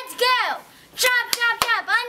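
A girl's high voice in drawn-out, sliding exclamations, with a few sharp hand claps a little after a second in.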